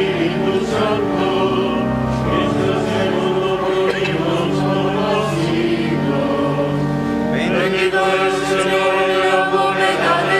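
Choir singing a slow liturgical chant in held, overlapping notes, steady in loudness.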